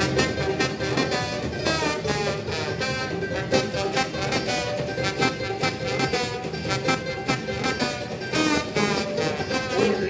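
Live acoustic roots band playing an instrumental passage: a trombone carrying the melody over strummed acoustic guitar and banjo.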